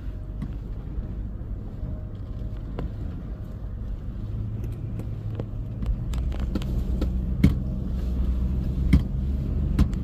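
Stock 2003 Toyota Land Cruiser driving along a bumpy dirt trail, heard from inside the cabin: a low engine and drivetrain rumble that grows louder about halfway through. Scattered sharp knocks cut through it, the loudest two a second and a half apart near the end.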